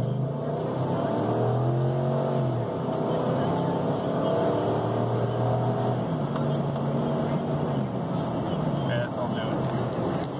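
A 2006 Toyota 4Runner's 4.7-litre V8 with a Flowmaster exhaust accelerating hard, heard from inside the cabin. The engine note rises steadily, drops back at an automatic upshift about two and a half seconds in, climbs again, and falls away about six seconds in as the throttle is lifted near 50 mph, then runs lower and steadier.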